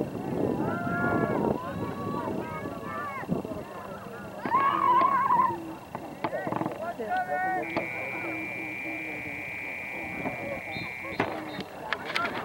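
Indistinct voices of sideline spectators talking and calling out, with a louder call about four and a half seconds in. In the second half a steady high tone holds for about three and a half seconds.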